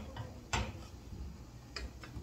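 A wooden spoon stirring a liquid mixture in a stainless steel pot, knocking lightly against the pot's side a few times.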